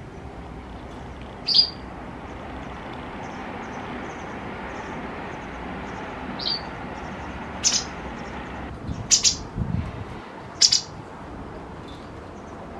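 White wagtail giving short, sharp calls, about six of them spaced irregularly, the later ones louder and closer together.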